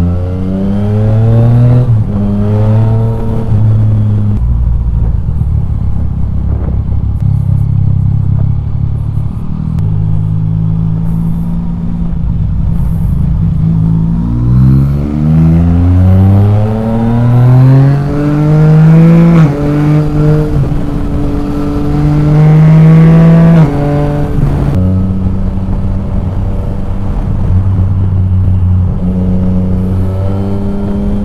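Yamaha Tracer 900 GT's 847 cc inline-three engine with an Akrapovic exhaust under way. It pulls through a few short rises early, then climbs steadily in pitch under acceleration from about halfway through and holds a high note. The throttle closes sharply about six seconds before the end, and it settles to a lower steady run.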